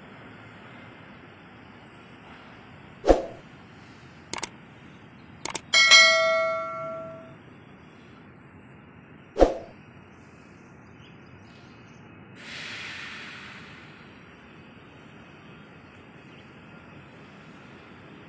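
Several sharp metal knocks and clanks over steady background noise. The loudest, about six seconds in, rings on with a clear metallic tone for about a second and a half. Another knock comes near ten seconds in, and a brief hiss a little after twelve.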